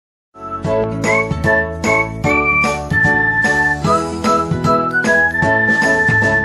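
Upbeat intro jingle music with a bright, chiming melody of held notes over regular percussive hits, starting suddenly after a brief silence.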